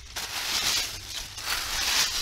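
Dry fallen leaves and twigs rustling and crackling as they are scraped aside, in two strokes about a second apart, clearing the leaf litter down to bare dirt.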